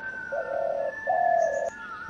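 Spotted dove cooing: two low notes of about half a second each, the second a little higher.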